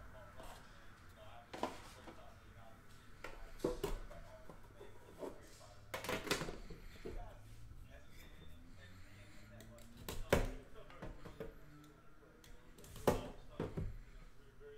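Hands handling a metal trading-card tin and the box inside it: scattered clicks and knocks, the loudest about ten seconds in and again near the end.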